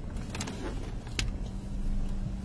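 Low, steady rumble and hum of a car rolling slowly, heard from inside the cabin, with a couple of faint clicks.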